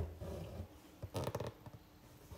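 Faint rasp of six-strand embroidery floss being drawn through fabric, a short scratchy pull a little over a second in, after some soft handling noise.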